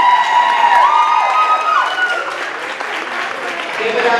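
Crowd applauding, with a voice holding one long high call over the clapping for about the first two seconds, stepping up in pitch before it fades.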